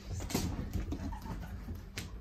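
A Great Pyrenees's paws and claws clicking and scuffing on a tile floor as she runs, mixed with a person's running footsteps: irregular taps and low thumps.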